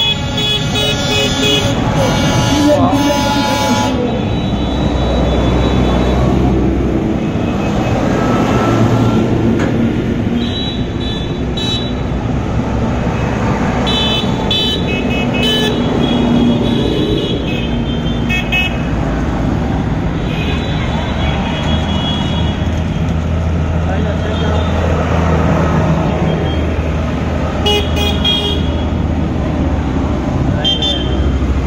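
A convoy of large diesel farm tractors driving past, engines running steadily low. Horns honk: a long blast over the first few seconds, then shorter toots every so often.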